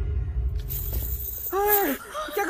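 A sudden crash about half a second in, with a noisy hiss trailing on after it, then a short vocal cry near the end.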